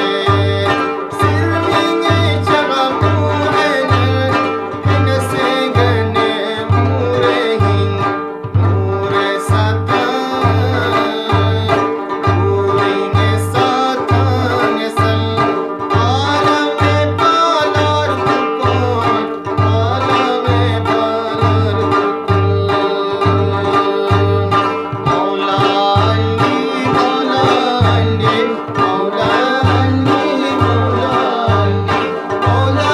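Ginan, an Ismaili devotional song: a melody over plucked strings with a steady low drum beat, and what sounds like a singing voice.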